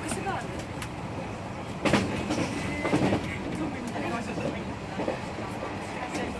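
Cabin of a JR 117 series electric train running at speed: steady rumble of running noise with a few sharp knocks from the wheels over rail joints, the loudest about two and three seconds in. Passengers talk faintly over it.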